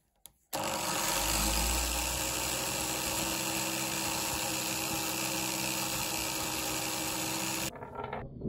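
Angle grinder with a wire wheel brush switching on with a click, then running steadily while a rusty threaded steel stud is held against it to wire-brush the rust off. The noise starts suddenly and stops abruptly near the end.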